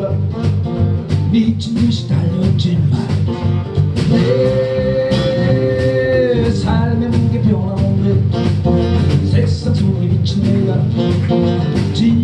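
Live blues band playing: acoustic and electric guitars over a drum kit keeping a steady beat, with one long held note about four seconds in.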